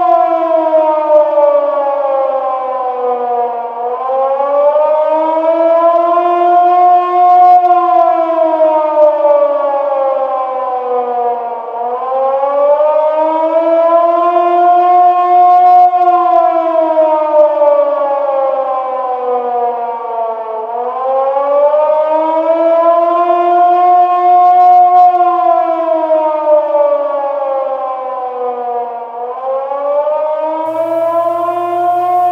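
A loud siren wailing, its pitch slowly rising and falling in a repeating cycle about every eight seconds.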